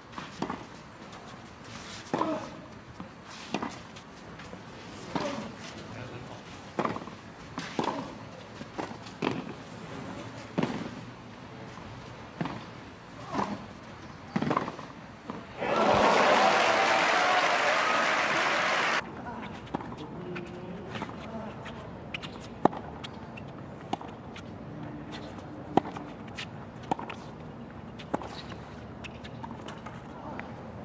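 Tennis rally: tennis ball struck by rackets about once a second for some fifteen seconds, then a loud burst of crowd applause lasting about three seconds that cuts off suddenly, followed by a low crowd murmur with a few sharp pops.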